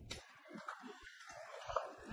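A single sharp click at the start, then faint low background noise with a few small ticks.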